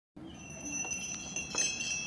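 Faint, steady high ringing like chimes, with a few light tinkles partway through.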